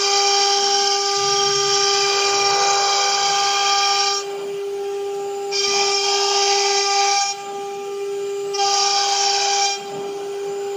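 AKM1530C CNC router spindle running with a steady high whine while its bit engraves a wooden board. The cutting noise comes in three loud stretches, dropping away about four seconds in and again around seven and near the end, as the bit moves between cuts.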